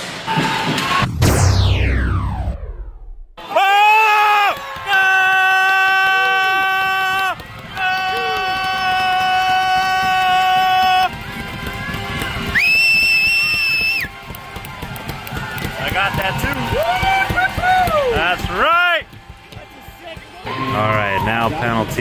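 Arena sound system playing music and sound-effect cues: a steep falling glide, then several long held notes, a higher held tone, and quick up-and-down warbling glides near the end.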